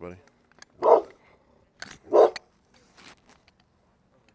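A dog barking: two loud single barks a little over a second apart, with a couple of fainter ones around them.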